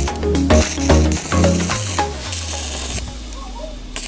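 Background music with plucked melodic notes. In the second half, a steady crackling hiss from a stick-welding arc on steel sits under the music.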